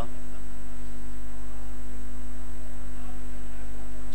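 Steady electrical mains hum carried through the microphone's public-address sound system, loud and unchanging, with no speech over it.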